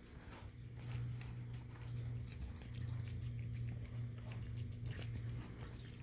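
A cat chewing and licking wet food at a plastic slow-feeder bowl: a run of small, quick wet clicks and smacks, over a steady low hum.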